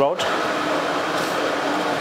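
Steady machine-shop background drone: an even whirr with one constant low hum, as from a fan or running workshop machinery.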